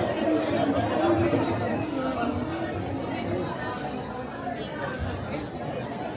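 Indistinct chatter of many passers-by talking at once in a crowded pedestrian street, with voices overlapping at a steady level.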